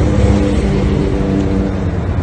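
Roadside traffic: a steady vehicle engine drone over a low rumble.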